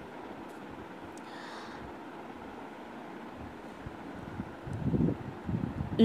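Steady, faint background noise: a hiss with no distinct events, in a pause between speech. A faint low sound rises briefly near the end.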